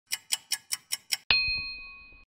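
Clock-tick and chime sound effect of an animated logo: six quick ticks, about five a second, then a single bright bell-like ding that rings and fades away.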